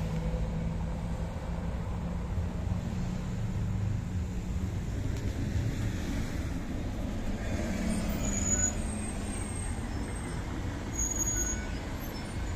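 City bus engine and passing street traffic: a low, steady engine drone that fades after the first few seconds, over a continuous rumble of road traffic.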